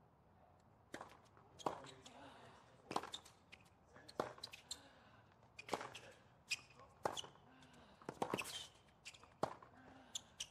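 Tennis rally on a hard court: sharp racket-on-ball strikes and ball bounces, a knock about every second or so from about a second in, with a quick double knock near the end.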